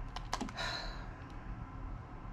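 A few light clicks of long fingernails against a tarot card, then a short brushing slide of the card in the fingers, and one faint last click.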